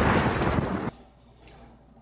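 The dying tail of a loud boom or explosion sound effect: a rushing noise that fades and then cuts off abruptly about a second in, leaving quiet.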